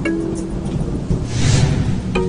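Intro music with sustained notes over a steady low drone, and a swelling rush of noise that peaks about one and a half seconds in.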